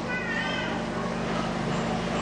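A brief high-pitched, wavering, voice-like cry near the start, with faint pitched traces later, over a steady low hum.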